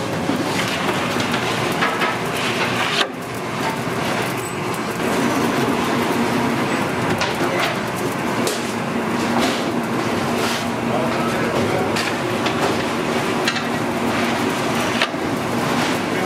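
Busy bakery noise: a steady machine rumble and hum, with scattered knocks and clatter as bread is loaded into the oven, and voices in the background.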